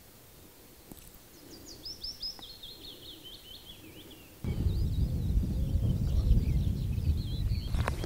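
A small songbird sings a quick run of notes that falls in pitch. About halfway through, a loud low rumble cuts in abruptly, with more bird notes above it and a couple of clicks near the end.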